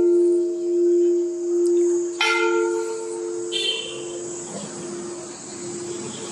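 Large brass temple bell, rung by pulling its chain, humming as it dies away, its tone swelling and fading in slow pulses. It is struck again, more lightly, about two seconds in, and rings on more faintly to the end.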